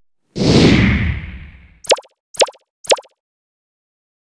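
Sound effects for an animated TV end card: a whoosh with a low rumble that fades over about a second and a half, then three short plops about half a second apart.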